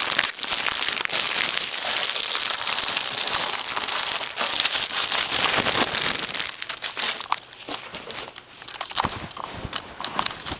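Plastic packaging crinkling and rustling as a T-shirt is unwrapped, dense for the first six seconds or so, then thinning to scattered crackles.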